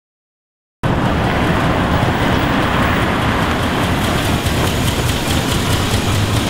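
Steady car and street noise that cuts in abruptly about a second in, after silence, and runs on at an even level.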